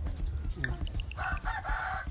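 A rooster crowing: one long call that starts a little over a second in, over a steady low background rumble.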